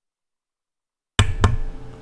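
Dead silence for about a second, then the sound cuts in abruptly with two sharp clicks in quick succession, followed by a low steady hum and hiss of room and microphone noise.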